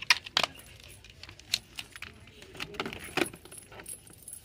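Heavy metal chain-link bracelets jingling and clinking as the wrist moves, with boxed eyeshadow palettes knocking and clacking as they are handled and put back on a display. A series of sharp clinks, loudest just after the start and again about three seconds in.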